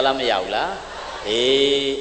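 A Buddhist monk delivering a sermon in Burmese, speaking into a microphone, with one syllable drawn out and held on a steady pitch near the end.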